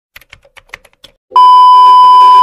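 A quick run of faint keyboard-typing clicks, then a loud, steady beep tone starting about one and a half seconds in: the test-pattern tone that goes with TV colour bars.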